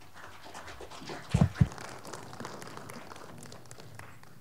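Handling noise on a live handheld microphone: rustling throughout, with two dull thumps about a second and a half in, the loudest sounds here.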